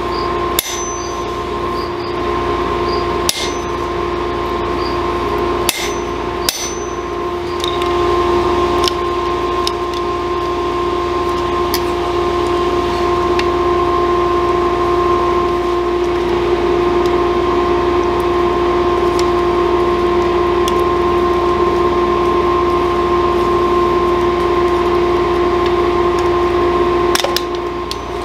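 Metal-on-metal work at a blacksmith's anvil: four sharp strikes with a brief ring in the first seven seconds, then light taps and clinks from tongs and pliers. A steady hum runs underneath throughout.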